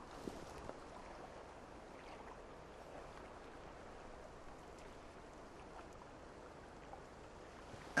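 Faint, steady hiss with small scattered crackles and rustles: a small birch-bark tinder fire catching and burning while more dry birch bark is laid on by hand.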